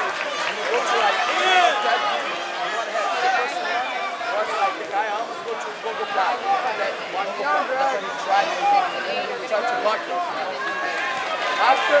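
Crowd of spectators talking and calling out, many voices overlapping.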